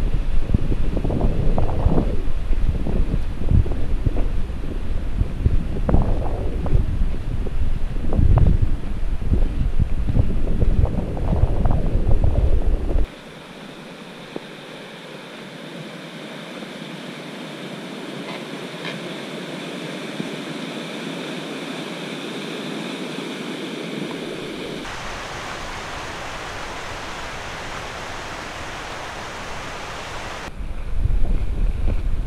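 Wind buffeting the microphone in uneven gusts, which cuts off abruptly about 13 seconds in. Steady rushing water of a mountain creek takes over, flowing under a wooden footbridge, and the rush turns brighter a few seconds before the end.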